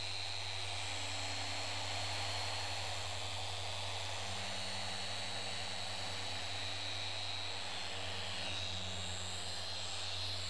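Several electric car-paint polishers (dual-action and rotary machine buffers) running together, a steady drone with a high whine over a low hum.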